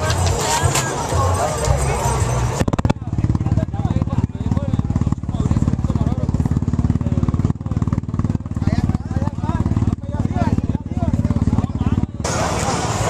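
Crowd chatter, then from about three seconds in a loud off-road race car engine running close by: a rapid, steady pulsing that covers the voices until it stops at the very end.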